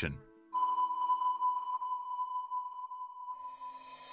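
Steady, high electronic tone from the soundtrack's sound design. It enters about half a second in after a brief near-silent dip and holds with a faint lower note beneath it, while a rising airy swell builds near the end.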